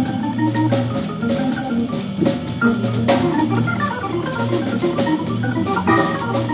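Hammond organ soloing in a jazz tune, with a bass line in the low register under the melody, backed by a drum kit keeping time on the cymbals.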